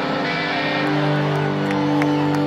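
Live rock band holding sustained guitar and bass chords, with the chord changing about a second in, heard through a concert PA.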